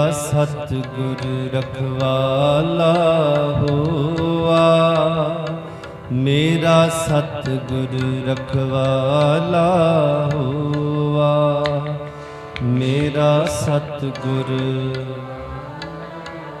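Sikh shabad kirtan: a male raagi singing long, ornamented phrases over a steady harmonium with tabla accompaniment. There are three sung phrases, starting at the opening, about six seconds in, and about thirteen seconds in.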